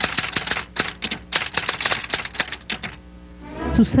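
Typewriter keys clacking in a fast, uneven run of about eight strikes a second, stopping about three seconds in; a typing sound effect laid under a title card.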